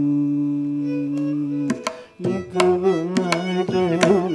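Carnatic ensemble music: a long held melodic note for nearly two seconds, then a brief drop, after which the mridangam and ghatam strokes come back in a quick rhythm under a wavering melody line.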